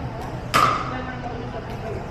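A pickleball paddle strikes the hollow plastic ball once, about half a second in, with a sharp pop that rings briefly and echoes off the hall. Voices murmur faintly underneath.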